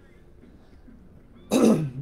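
A woman clearing her throat once, loudly, about one and a half seconds in, after a quiet stretch of room tone.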